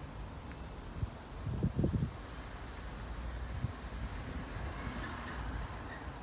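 Faint outdoor background with a steady low rumble, and a short cluster of low thumps about one and a half seconds in.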